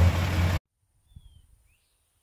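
An engine idling with a steady low hum under outdoor noise, cut off abruptly about half a second in. Near silence follows, broken by a couple of faint bird chirps.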